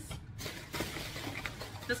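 Thin plastic carrier bag rustling and crinkling as groceries are pulled out of it by hand.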